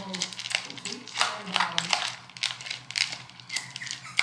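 Metal spoon clinking and scraping against a stainless steel dog bowl while soft canned dog food is stirred into dry kibble: a quick, irregular run of light clicks.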